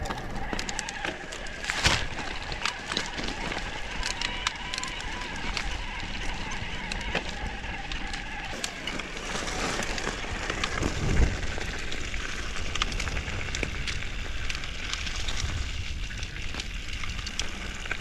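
Electric mountain bike descending a rocky singletrack: tyres crunching and crackling over loose stones and leaves, with the bike rattling and clicking over the bumps. A heavier thump comes partway through.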